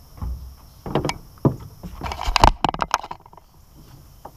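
Irregular knocks, bumps and clatters against the deck of an aluminum jon boat as fishing gear and the camera are handled, loudest a little after two seconds.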